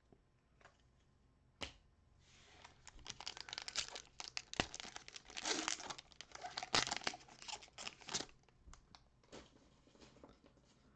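A Donruss football trading-card pack's wrapper torn open by hand and crinkled, crackling from about two seconds in until about eight seconds. A few faint clicks follow near the end.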